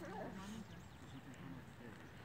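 Faint, distant conversation: people talking too quietly for the words to be made out.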